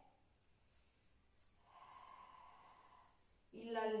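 A woman's slow yoga breath out, faint and steady for about a second and a half, starting a little before the middle. A few words of speech begin just before the end.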